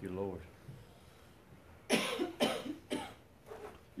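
A man coughing three times in quick succession, about half a second apart.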